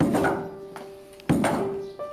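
Wooden foot-treadle trip hammer pounding wet plant-fibre pulp on a stone block, beating the fibre for traditional handmade paper. Two heavy thuds about 1.3 seconds apart, at a steady treading rhythm.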